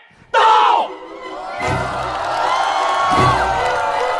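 A group of voices shouting "到!" ("present!") together, then stage dance music starting with two heavy bass beats while a studio audience cheers.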